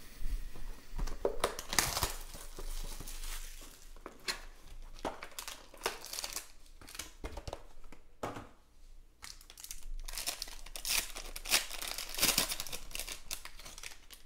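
Foil trading-card pack and its packaging being crinkled and torn open by hand: irregular crackling rustles with short pauses.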